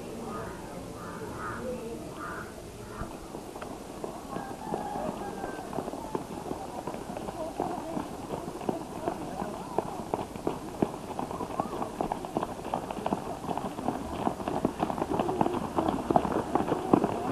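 A group of people running, their quick, overlapping footsteps getting louder as they come closer.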